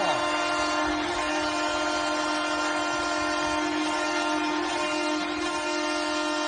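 Arena goal horn blowing one long, steady low note, sounded for a home-team goal.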